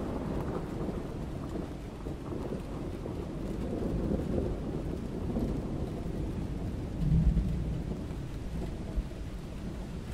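Low rumbling like thunder over a steady rain-like hiss, swelling again about seven seconds in.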